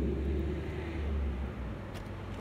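Low, steady rumble of the Ford Kuga's 1.5 EcoBoost four-cylinder petrol engine idling, heard at the twin tailpipes. It fades about one and a half seconds in.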